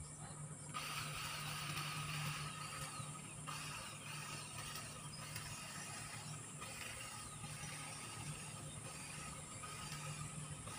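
Handheld electric garden trimmer running steadily as it cuts along a hedge edge. Its motor tone comes in about a second in and eases off a few seconds later.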